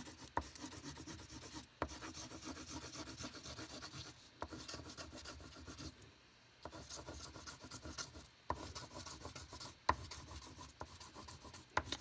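Oil pastel rubbed back and forth on paper in quick colouring strokes, scratchy and faint, stopping briefly about halfway through, with a few sharp ticks among the strokes.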